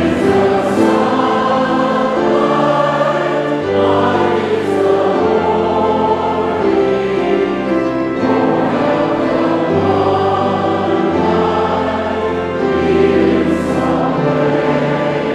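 A large congregation and choir singing a song together with instrumental accompaniment, held notes over a bass line that moves every second or two.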